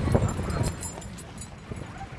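A vehicle driving on a rural dirt road, heard from inside: a steady low rumble with scattered knocks and rattles, loudest in the first half second and then settling lower.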